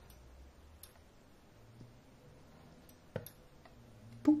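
Near silence with a faint low hum and a few faint clicks, one sharper click about three seconds in.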